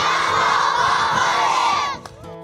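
A large group of schoolchildren shouting and cheering together, loud, cutting off suddenly near the end.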